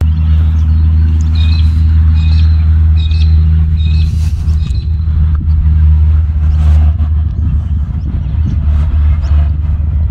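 A steady, low engine hum from a motor running, with light bird chirps in the first few seconds.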